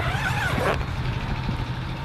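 Steady low hum over a noisy background, with a faint distant voice briefly in the first second.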